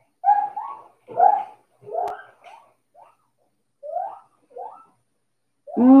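A woman whispering under her breath in about six short breathy bursts, then saying 'Oh' aloud just before the end.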